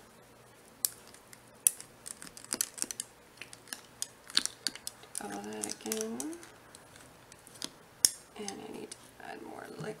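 Plastic debubbler tool scraping and tapping against the inside of a glass canning jar packed with pumpkin cubes, a string of sharp irregular clicks. A voice mutters briefly about halfway through and again near the end.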